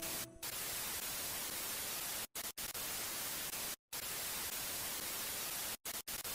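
TV static hiss, a steady even white noise that drops out to silence for a split second several times.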